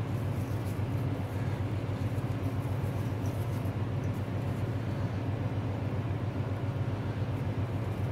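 A steady low mechanical hum, even throughout, with nothing standing out over it.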